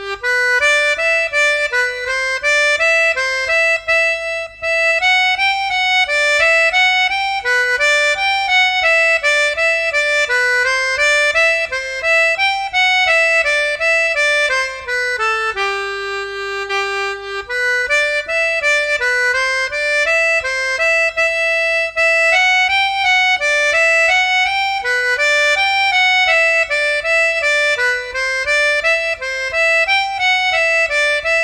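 Yamaha P-37D melodica playing an Irish jig melody in quick running notes, with one long held low note about halfway through.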